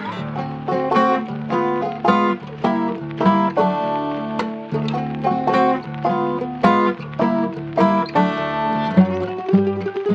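Jazz-and-blues instrumental music: plucked strings picking a steady run of notes over low bass notes.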